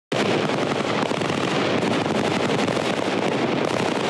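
Dense, continuous crackle of rapid gunfire from several rifles firing at once, starting abruptly and holding an even level.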